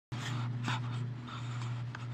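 A person's short breathy puffs of breath, over a steady low hum.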